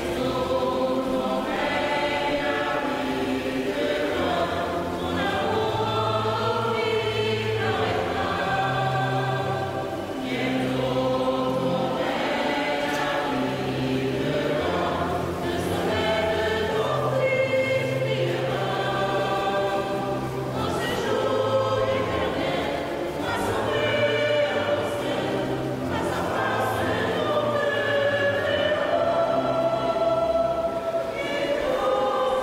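Church choir singing the entrance hymn of a Mass in long held notes over a steady low bass line.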